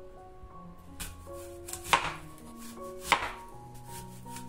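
Serrated knife slicing crosswise through an apple and knocking on a wooden cutting board: a light knock about a second in, then two sharp knocks about a second apart. Soft piano-like background music plays underneath.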